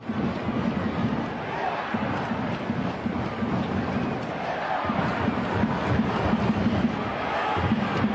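Stadium crowd at a soccer match heard through the broadcast: a steady din of many voices.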